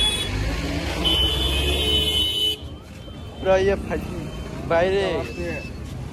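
Street traffic: a motor vehicle engine runs close by with a high steady tone over it for about two and a half seconds, then drops away. After that, voices call out briefly twice.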